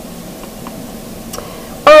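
A quiet pause with low room noise and three faint, short ticks of a charcoal pencil against the drawing paper. A woman's voice resumes just before the end.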